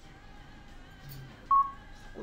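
Soft background music with held tones, broken about one and a half seconds in by a single short, loud electronic beep.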